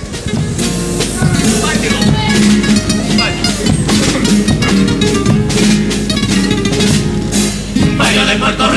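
Chirigota band music: Spanish guitars strumming over a steady drum beat of bass drum and snare.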